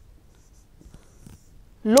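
Faint, scattered scratches and small ticks of a stylus writing on a pen tablet.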